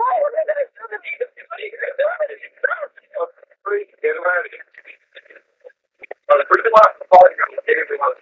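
Noise-filtered recording of a 911 phone call: narrow, phone-line speech of a distressed woman pleading, with a few sharp clicks on the line a little before seven seconds in.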